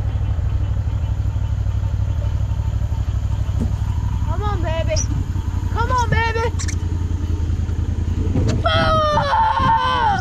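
Boat motor idling with a steady low throb, easing off a little near the end.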